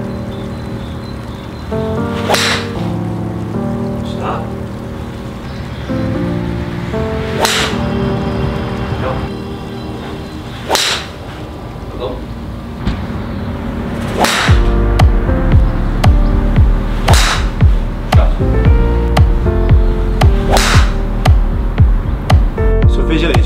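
Background music, with a heavier beat coming in about two-thirds of the way through. Over it come about five golf shots a few seconds apart, each a sharp swish and strike of a club head hitting a ball off a hitting mat.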